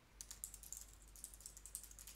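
Faint, quick keystrokes on a computer keyboard as a filename is typed.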